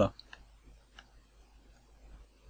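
A few faint computer mouse clicks: two close together near the start and one about a second in.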